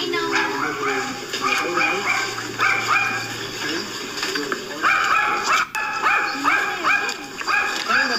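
A small dog yapping, a run of short high yaps coming several a second, thickest in the second half.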